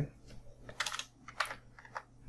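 Typing on a computer keyboard: a few irregular keystroke clicks, with a short cluster about a second in.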